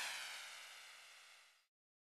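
The fading, ringing tail of an edited-in whoosh transition effect, dying away and cutting off sharply about a second and a half in.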